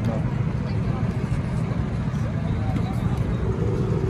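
Go-kart engines running, heard as a steady low rumble, with faint voices over it.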